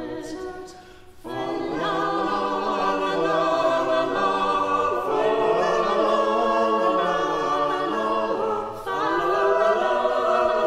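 Small vocal ensemble singing Renaissance part-music in several voices, in a reverberant church. A phrase dies away about a second in, a new phrase begins, and there is a brief break for breath near the end before the singing resumes.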